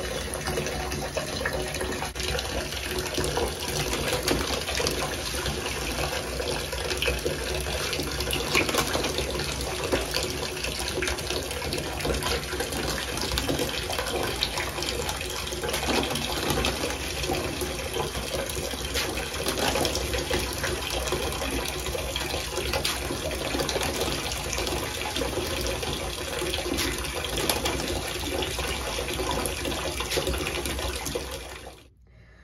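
Bathtub spout running steadily, its stream splashing into shallow water in the tub as it fills.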